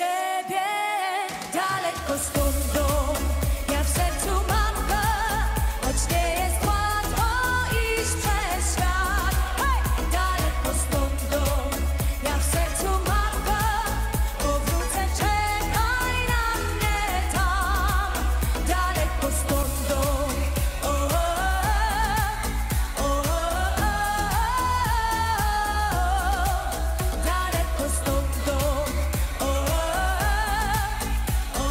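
Polish pop song with a woman singing a wavering, ornamented melody over a steady beat and heavy bass. The bass drops out for the first second or two, then comes back in.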